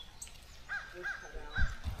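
A bird calling outdoors: a quick run of about four short calls, roughly a quarter-second apart, over a low rumble.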